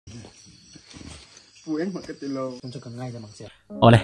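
Insects chirring steadily at night in a high, thin band. A voice speaks over them from about a second and a half in, and the sound cuts off just before the end.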